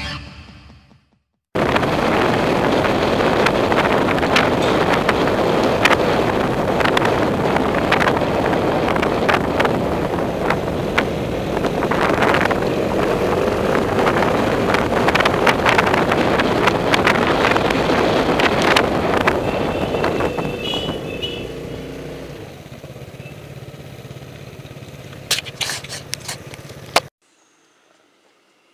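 Wind rushing over the microphone of a camera mounted on a moving scooter, with the small scooter engine underneath, starting abruptly about a second and a half in. It drops to a quieter engine sound about twenty-two seconds in, and a few sharp knocks come near the end before it cuts off.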